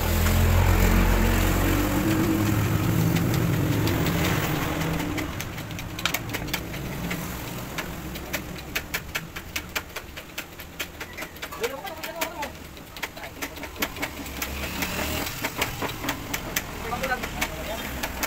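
A motor runs with a loud low hum for about five seconds, then dies down. A quick run of sharp clicks follows.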